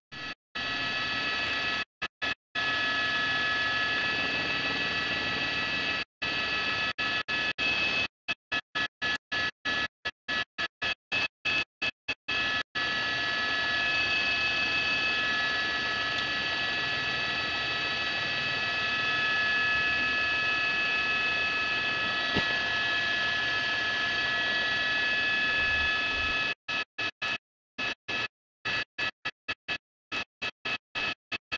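Steady whine of a news helicopter's cabin heard over its live audio feed, several steady tones over a bed of noise, with the sound cutting out completely in many brief gaps, most often in the first half and near the end.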